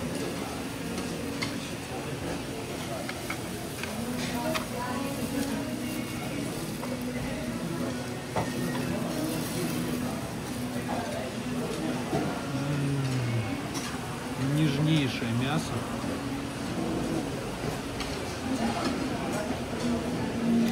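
Disposable plastic gloves crinkling while a cooked crab's shell is cracked and pulled apart by hand, with a few sharp clicks, over murmured background voices.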